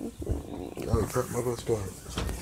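A person's voice making wordless sounds in about four short pulses in the second half.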